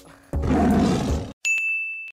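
A roar-like edited sound effect lasting about a second, then, after a brief break, a short high steady tone that starts and stops abruptly.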